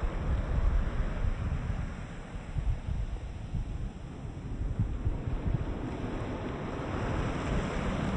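Waves washing with a low wind rumble, a steady rushing noise that eases off in the middle and swells again near the end.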